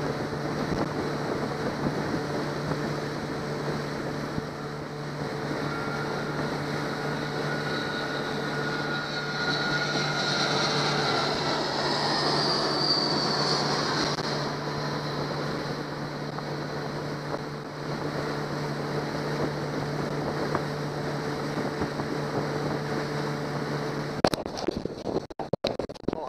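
Boat motor running at a steady speed with water rushing along the hull. The steady hum cuts off near the end, followed by crackling wind on the microphone.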